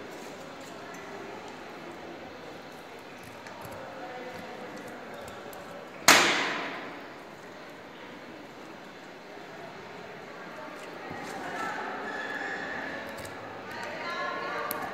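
One sharp metallic clang about six seconds in, something striking the stainless steel dissection table, ringing out over about a second. Faint indistinct voices in the room underneath.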